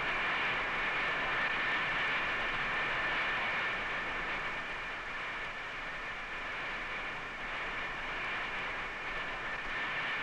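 A steady rushing hiss, like machinery or moving air, with two faint high steady tones over it, easing slightly about halfway through.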